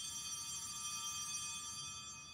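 Altar bells rung at the elevation of the chalice: one ring of bright, high tones that holds and begins to fade near the end.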